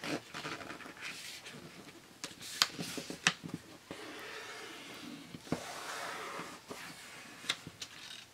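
Brown cardstock being folded and creased by hand: palms pressing and rubbing along the paper, with a longer rubbing stretch in the middle and a few sharp paper crackles and taps.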